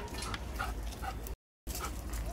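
A dog making a few short calls within the first second or so, over steady outdoor background noise; the sound drops out for a moment about a second and a half in.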